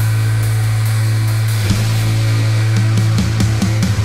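Instrumental passage of an AI-generated alternative rock song: a held low bass note under distorted, heavy guitar, breaking into a run of short drum and bass hits in the last second or so.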